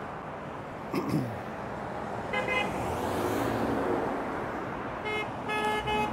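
Passing cars sounding short horn toots, one about two and a half seconds in and a couple more near the end, over the steady hiss of traffic going by. About a second in there is a brief sound that falls in pitch.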